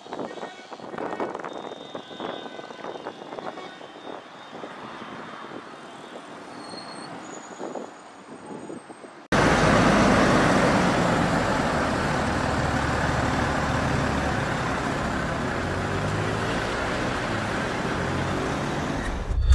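Quiet street traffic, then, about nine seconds in, a sudden switch to a loud, steady engine rumble from a heavy dump truck close by in traffic.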